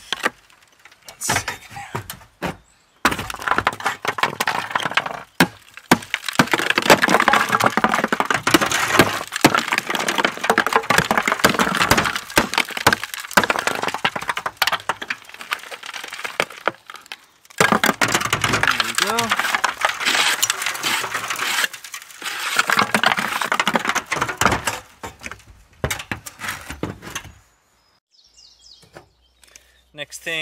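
Hammer and chisel breaking old concrete flashing off the edge of corrugated roof panels: repeated knocks with a long crunching, scraping clatter of crumbling concrete, which falls quiet shortly before the end.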